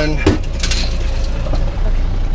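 A knock and a short clatter of metal clinks from a wire crab pot being handled, over a steady low rumble.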